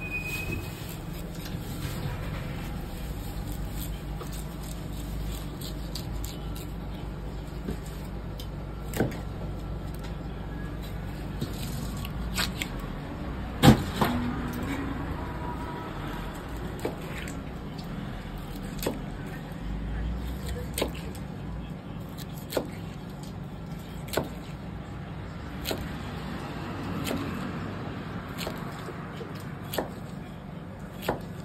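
Large knife cutting an Atlantic bonito into steaks on a plastic cutting board: sharp knocks every few seconds as the blade chops through the fish and strikes the board, the loudest about 14 seconds in. Under it is a steady low hum.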